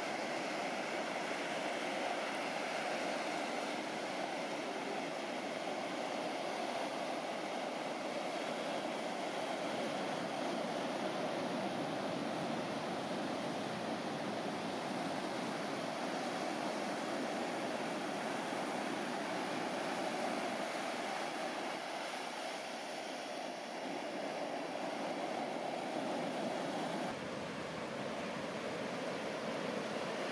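Ocean surf: waves breaking and washing toward shore in a continuous, steady rush.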